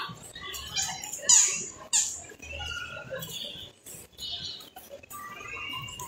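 Small birds chirping and squeaking: a string of quick high calls, the two loudest about a second and a half and two seconds in.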